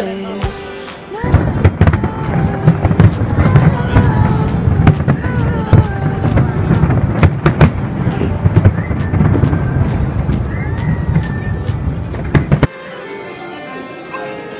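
A fireworks display: bursts going off in quick succession for about eleven seconds, with some whistling glides among them. It cuts off suddenly near the end, and quieter music follows.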